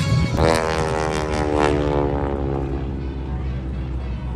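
Propeller engine of a smoke-trailing aerobatic plane droning overhead, its pitch sliding slowly downward as it passes and fading out about three seconds in.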